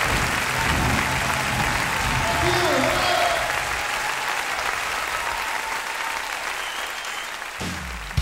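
Concert audience applauding between songs, the applause slowly dying down. The band's last sustained low notes fade out in the first few seconds, and the next number begins with a drum hit right at the end.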